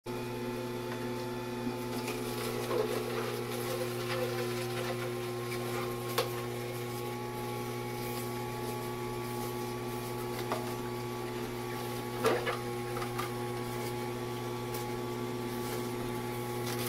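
Slow masticating juicer's motor running with a steady hum while its auger crushes celery, with a few sharp knocks and clicks as pieces are dropped into the feed chute, the loudest about twelve seconds in.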